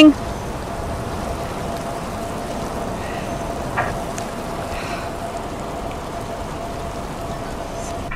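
Steady rain and wind noise with a faint steady hum, and a single light tap a little before the middle.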